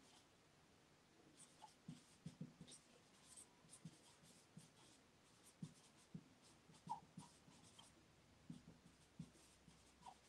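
Faint, irregular strokes of a marker pen writing on a whiteboard.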